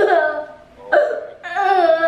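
A child's high-pitched voice in three short bursts, like stifled giggling.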